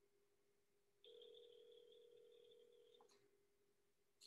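Telephone ringback tone heard faintly through a call's audio: one steady ring of about two seconds starting about a second in, the call ringing and not yet answered. A short click follows it, over a faint steady hum.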